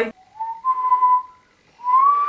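A person whistling: one note sliding up into a held tone, then after a short break a second, slightly higher held note starting near the end.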